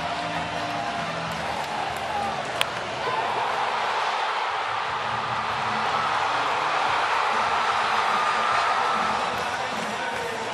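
Ballpark crowd cheering after a walk-off home run, swelling a little louder about three seconds in, with one sharp bang a couple of seconds in.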